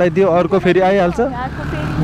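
A man talking over the steady running of a motorcycle and its road noise. The talk stops about a second and a half in, leaving only the engine hum.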